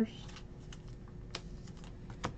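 Trading cards being handled and slid against each other, giving a few faint, scattered clicks and ticks, with a faint steady hum underneath.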